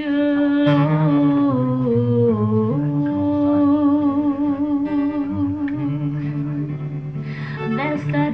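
A woman humming a wordless melody in long held notes with a slight waver, over acoustic guitar; the tune dips about two seconds in and rises again.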